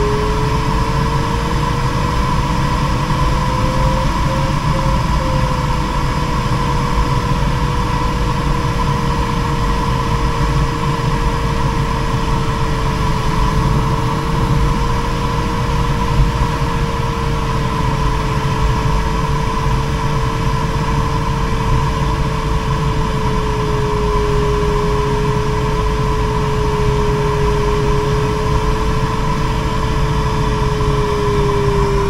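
Airflow noise of a sailplane in gliding flight, heard inside the closed cockpit, steady throughout. A single steady tone drifts slightly in pitch over it, rising a little a few seconds in and sinking slowly later.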